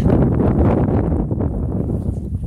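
Wind blowing across the microphone: a loud, low rumbling buffet with no clear pitch.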